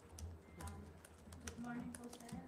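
Faint, scattered clicks of keyboard typing under a steady low hum, with faint voices murmuring near the end.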